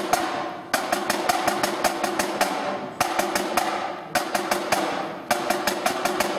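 Snare drums and bass drum of a drum corps playing a march pattern, a loud stroke about once a second with lighter taps and rolls between, over a steady Highland bagpipe drone.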